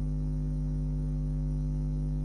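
Steady low electrical mains hum with several evenly spaced overtones.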